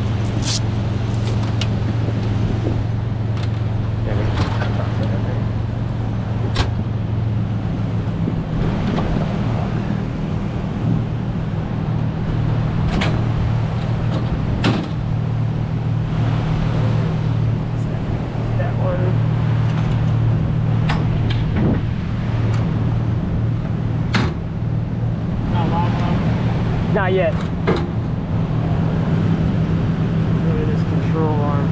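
A vehicle engine idles steadily, a constant low hum, under scattered sharp clicks and knocks as a kinetic recovery rope and soft shackle are handled in a pickup bed.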